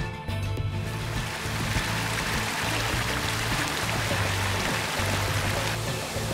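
Background music with a steady low hum. From about a second in, the even rush of a waterfall and its stream fades in under it.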